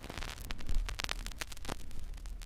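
Static-like electronic crackle with a run of clicks over a low hum, the sound of an animated end ident.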